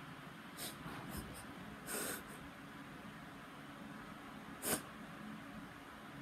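A person sniffing a few times: short, faint sniffs, the loudest one near the end.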